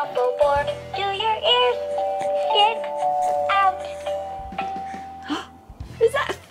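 Animated plush elephant toy playing its recorded children's song: a sung voice over electronic music with held notes and a steady bass line, fading near the end.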